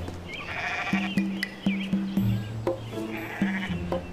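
Background music with a steady repeating bass beat, over which a goat bleats twice, once about half a second in and again near the end.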